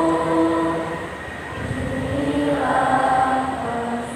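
A large choir singing long held notes in harmony, amplified through loudspeakers. One chord is held for about a second, there is a brief dip, and then another sustained chord swells up in the second half.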